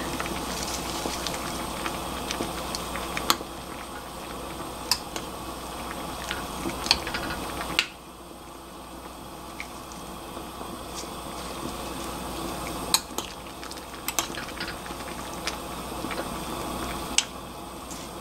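Doenjang jjigae (soybean-paste stew) bubbling in a glass pot, with a metal ladle now and then clinking lightly against the pot as wild chives are stirred in. The bubbling drops in level abruptly about eight seconds in.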